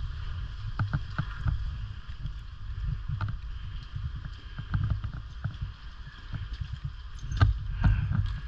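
Water sloshing against a rocky pool edge under a low rumble, with scattered knocks and clicks as a diver in scuba gear climbs out and steps across the rocks, loudest near the end.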